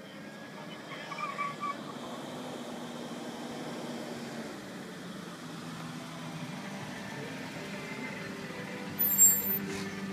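Jeep Cherokee driving up and coming to a stop close by, its engine running steadily and growing louder as it nears. A short loud noise comes near the end.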